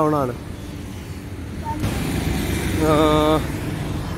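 Roadside traffic: motor vehicles passing on the road, with a low rumble throughout and a passing vehicle's noise swelling from about two seconds in.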